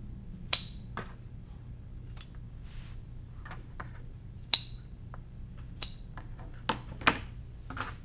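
Sewing scissors snipping through leftover quilt binding ends: four sharp snips, the first alone and the last three about a second or so apart, with fainter clicks of the blades and fabric handling between them.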